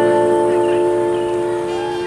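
The last chord of a live song from electronic keyboard and acoustic guitar, held and ringing out while it slowly fades.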